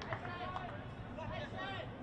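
Faint voices, over a low steady hum of open-air ground noise.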